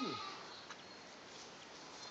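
A man's voice finishing a spoken word with a falling pitch, then faint outdoor background with no distinct sound.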